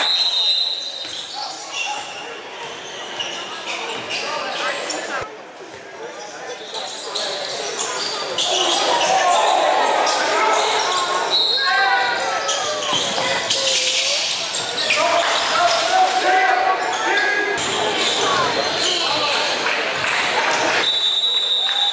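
Live game sound in a gym: a basketball bouncing on a hardwood court, with players' and spectators' voices calling out, louder in the second half.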